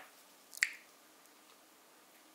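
Close handling sounds from gloved hands with a dried jujube and a paring knife: a faint click right at the start, then one sharp snap-like click about half a second in.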